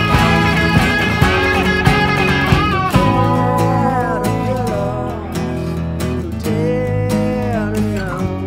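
Instrumental break of an indie folk-rock song: guitar over bass and drums, with a lead melody line whose notes bend and glide.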